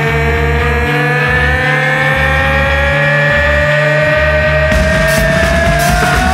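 Psychedelic hard rock: one long held note glides slowly upward in pitch over pulsing bass and drums, with cymbals coming in near the end.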